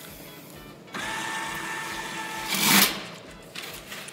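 An automatic paper towel dispenser's motor whirs steadily for about a second and a half, followed by a brief, louder burst of noise.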